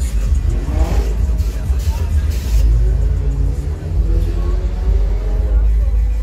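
Cars rolling slowly past over loud, bass-heavy music, with an engine revving briefly about a second in, and voices.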